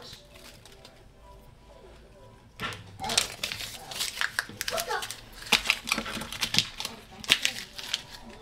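Paper tea-bag wrapper being torn open and handled. A quick run of crinkling and crackling starts about two and a half seconds in and carries on irregularly to the end.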